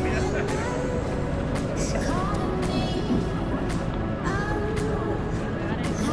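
Street ambience at a city crossing: a steady low traffic rumble with passers-by talking.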